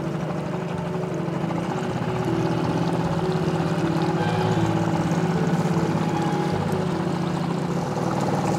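Small boat's outboard motor running steadily at low trolling speed, with water rushing along the hull; it gets a little louder about two seconds in.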